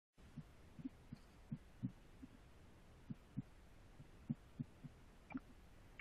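Near silence: faint line hiss with a dozen or so soft, short low thumps at irregular intervals.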